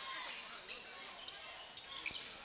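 Faint arena sound of a basketball game in play: low crowd murmur and voices, with a few ball bounces on the hardwood.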